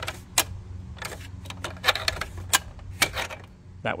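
Aluminum work platform's leg-height adjustment: the spring-loaded lock pins and telescoping legs click and clack sharply, about a dozen times, as a leg is raised and locked at a new height.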